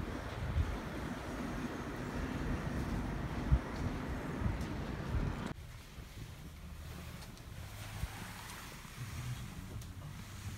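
Wind buffeting the microphone outdoors, a steady low rush with a few gusts. About five and a half seconds in it cuts off abruptly to a much quieter indoor room tone with a faint low hum.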